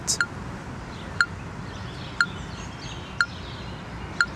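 Metronome app on a smartphone ticking at 60 beats per minute through the phone's small speaker: one short, pitched click each second, four in all.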